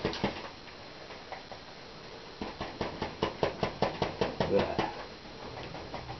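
Loaded bristle paintbrush tapped repeatedly against the canvas, stippling paint on: a run of short, light taps about three or four a second, starting a couple of seconds in after a quieter stretch.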